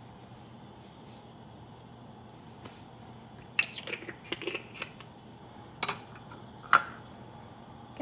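Light clicks and rattles from spice containers and a measuring spoon being handled while seasonings go into the pot. They come in a few short clusters in the second half, after a stretch of faint steady hum.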